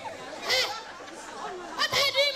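Speech: short, high-pitched spoken exclamations, one about half a second in and another near the end, with chatter in the hall.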